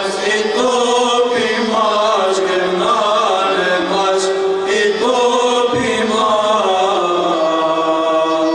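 Unaccompanied male ensemble singing Byzantine chant: a melody moving slowly over a steady, low held drone note.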